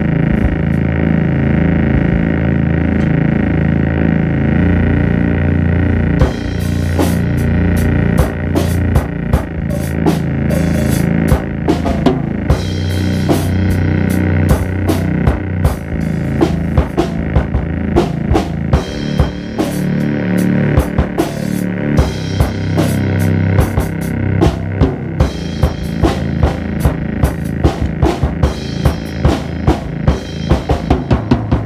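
Improvised jazz jam: a keyboard holds sustained low notes and chords, and a drum kit comes in about six seconds in with a steady beat of kick, snare and cymbal hits.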